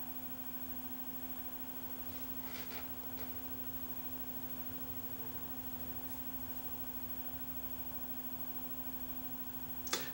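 Quiet room tone with a steady low electrical hum and a few faint soft ticks about three seconds in.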